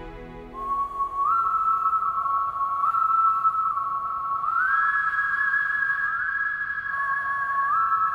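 Drama background music: a single high, sustained melody line sliding smoothly between a few long notes, in a whistle-like synth voice over a soft pad, entering about half a second in.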